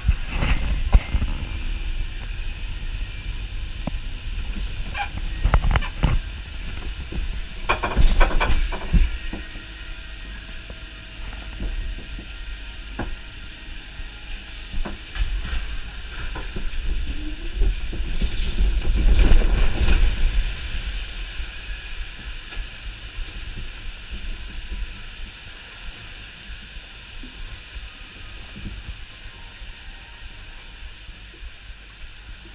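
Water ride heard from on board the boat: a steady rumble and rushing water with a hiss, swelling in loud surges several times, the longest about two-thirds of the way through, then settling into quieter running water.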